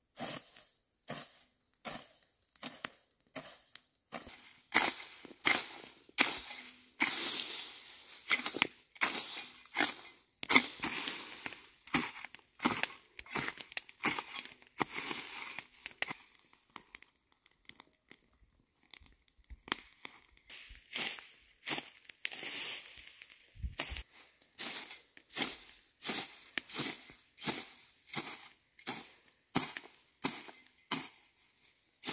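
A hoe scraping across dry ground and dragging dry grass and weeds, in repeated short, scratchy strokes about two a second, with a brief pause a little past halfway.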